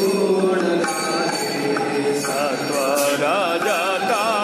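Devotional mantra chanting over a steady low drone. From a little past halfway the voice wavers up and down in pitch, and a brief sharp stroke sounds about three seconds in.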